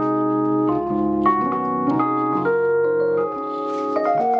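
Sustained organ-like keyboard chords played from a MIDI keyboard, moving to a new chord every half second or so.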